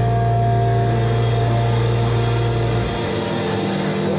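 Electric guitar and bass amplifiers ringing out on a held chord at the close of a rock song, a steady drone with no drums; the low bass note drops out about three seconds in.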